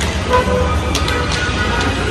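Road traffic on a busy street: cars passing with a steady low rumble, and a short car-horn toot about half a second in.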